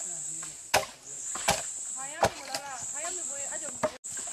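An axe chopping into wood: three strokes evenly spaced about three-quarters of a second apart, then a fourth near the end.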